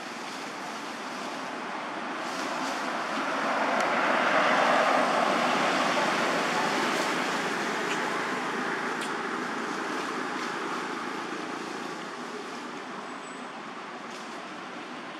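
A passing road vehicle: a steady rush of noise that builds to a peak about five seconds in and then slowly fades away.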